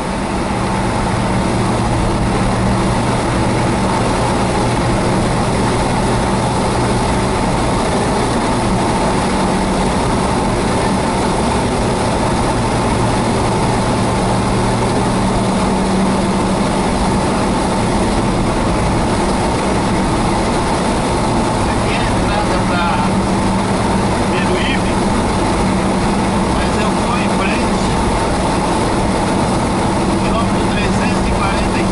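Steady engine drone and tyre and road noise heard inside a car's cabin cruising at highway speed.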